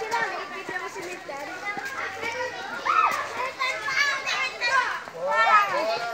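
Children chattering and calling out in high voices, several overlapping, with one rising-and-falling call about halfway through.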